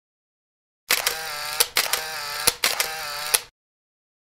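Camera sound effect: three sharp clicks, each followed by a whirring motor whine, starting about a second in and stopping abruptly at about three and a half seconds.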